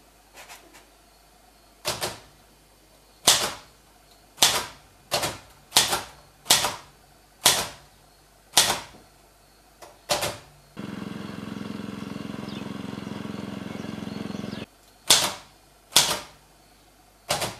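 Manual typewriter keys striking one at a time at an uneven pace, each a sharp clack. Past the middle, a steady rasping mechanical sound runs for about four seconds, then single key strikes resume.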